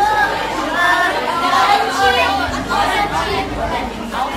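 Overlapping voices of several people talking at once: classroom chatter, with one woman's voice close by.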